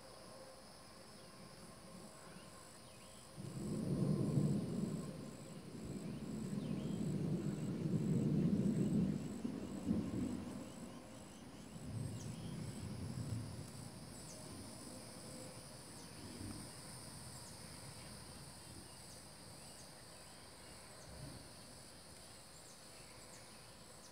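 Thunder rumbling in a long low swell from about four to ten seconds in, then again briefly around twelve seconds. Insects chirp steadily behind it in a regular pulse.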